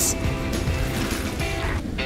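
Electric heat gun blowing a steady rush of hot air, with background music; the blowing stops near the end as the gun is lifted away.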